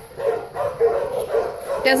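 Dogs barking in the background, a steady din that carries on without a break, typical of a boarding kennel.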